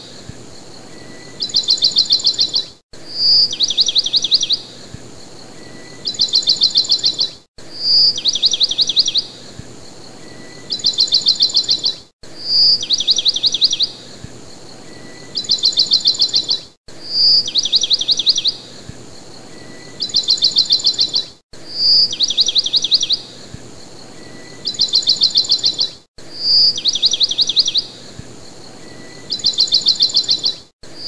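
Bird song repeating on a loop: each cycle is a short high note followed by two fast high trills, coming round about every four and a half seconds with a brief silent cut between cycles. A faint steady hiss lies under it.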